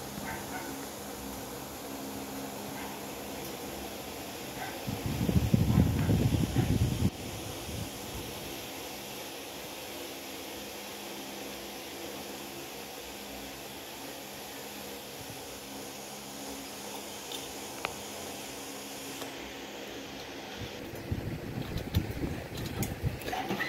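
A steady low hum, with a loud low rumbling noise that lasts about two seconds, starting about five seconds in, and another rougher rumble near the end.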